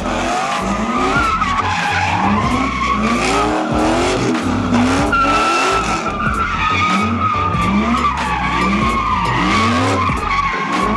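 Car tyres squealing steadily under wheelspin in a burnout or donut, with a wavering pitch. Over the squeal the engine is revved again and again in short rising sweeps, slightly faster than one a second.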